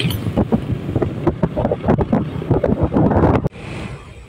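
Heavy, gusty wind buffeting the microphone while riding along a road, with a vehicle's rumble beneath. It cuts off suddenly about three and a half seconds in, leaving a much quieter background.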